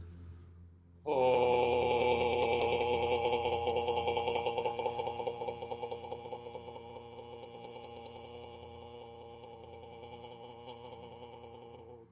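A man's voice holding one long sung "oh" vowel on a steady pitch for about eleven seconds, starting about a second in and slowly fading. The tone flutters quickly as he taps his chest with his fingertips while he sings, a chest-tapping vibration exercise.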